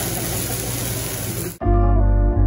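Steady hiss and sizzle of a flambé flare-up on a hibachi teppanyaki grill. It cuts off suddenly about a second and a half in, replaced by soft ambient music with a steady low bass.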